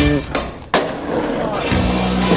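A skateboard landing from a jump, with one sharp slap of the board on the ground about two-thirds of a second in, followed by rolling. Rock music dips out just before the landing and comes back near the end.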